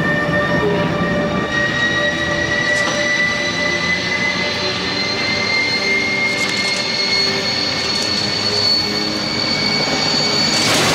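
Sound effect of a flying ship diving toward the ground after losing its power: a steady high whine that slowly rises in pitch over a continuous rushing noise.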